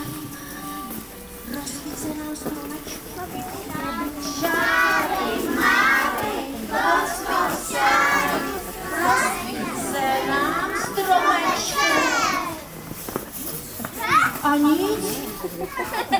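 A group of young children calling out together, many high voices overlapping, loudest from about four seconds in until about twelve seconds, with quieter crowd murmur around it.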